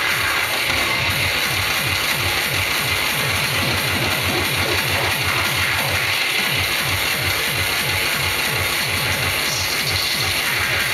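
Hardcore electronic dance music played loud through a club sound system from a DJ set: a fast, evenly repeating kick drum, each hit falling in pitch, under a dense bright noisy wash.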